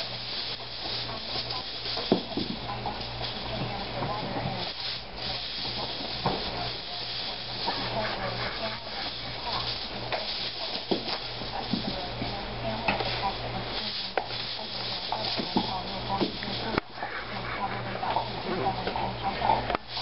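Hula hoop spinning around a person's waist: a continuous rubbing, scraping noise with scattered light knocks, over a low steady hum.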